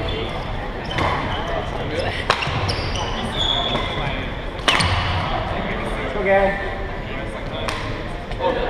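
Badminton rackets striking the shuttlecock in a doubles rally in a large gym hall: sharp cracks a second or two apart, the loudest a little under five seconds in. Spectators chatter throughout.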